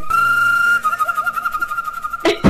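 A single held, high whistle-like note, steady at first and then wavering through its second half.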